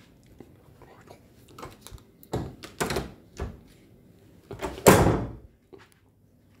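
A door being handled: a few knocks and rattles, then one much louder thunk about five seconds in as it shuts.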